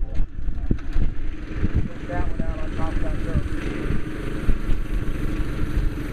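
A backhoe's diesel engine idling steadily, with faint voices over it.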